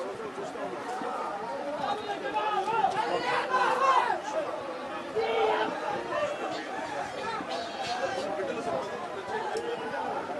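Many people talking at once in a crowded room: overlapping chatter, a little louder around three to four seconds in.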